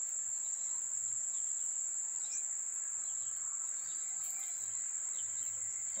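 A steady, high-pitched insect trill that holds one unbroken pitch throughout.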